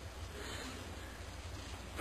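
Faint steady room noise with a low hum underneath; no distinct events.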